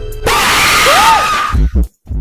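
Calm music is cut off about a quarter second in by a sudden, very loud, harsh scream, the zombie jumpscare of the K-fee commercial, lasting just over a second. A short bit of voice follows near the end.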